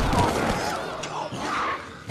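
Film action-scene sound effects: a heavy thud at the start, followed by wavering growling creature calls.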